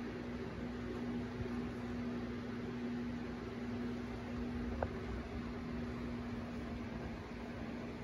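Electric fan running steadily: a continuous whir with a constant low tone underneath, and one light click about five seconds in.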